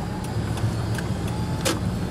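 Car engine and road noise heard from inside the cabin: a steady low hum. A single sharp click comes near the end.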